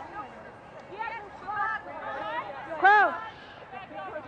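Voices on a rugby pitch calling out as a scrum is set, the loudest a single high shout about three seconds in, over crowd chatter.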